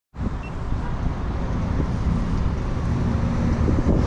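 Road traffic at a town intersection: cars driving and turning through, heard as a steady low rumble, with wind rumbling on the microphone.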